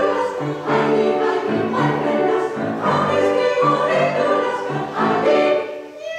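Women's choir singing in parts with piano accompaniment, held notes moving from chord to chord, the phrase easing off just before the end.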